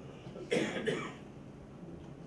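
A man coughing twice in quick succession, about half a second in, then quiet room tone.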